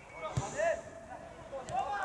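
A football kicked once near the start, a single sharp thud, followed by short shouted calls from players on the pitch.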